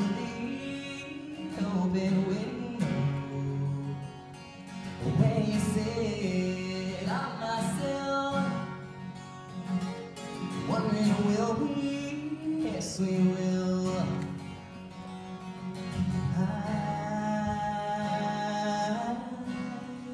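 Live acoustic folk song: a strummed steel-string acoustic guitar with cajon hits, and a man singing the melody at times.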